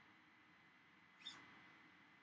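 Near silence, broken by one brief, faint, high-pitched squeak a little over a second in.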